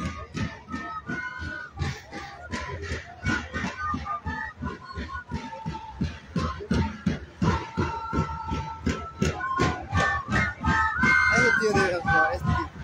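Live Andean flute band playing a melody of held notes over a steady drumbeat, about three beats a second, with crowd voices around it.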